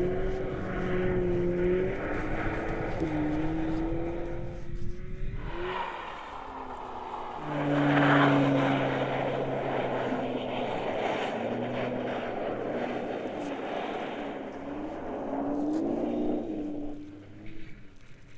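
Audi S3's turbocharged 2.0-litre four-cylinder engine revving up and down as the car slides on a snow-covered track, with a rush of tyre and snow noise. The sound is loudest about eight seconds in and fades near the end.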